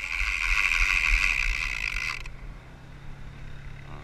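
Fishing reel's clicker ratcheting fast as line is pulled off the spool, a steady high buzz that cuts off suddenly about two seconds in and starts again at the end. It is a run: the sign that something may have taken the bait.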